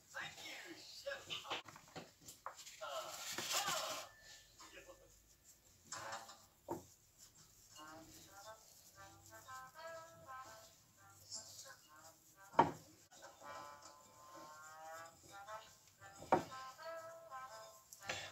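Faint children's television programme in the background: voices and sung music. Two sharp knocks cut through it, the louder about twelve seconds in and another a few seconds later.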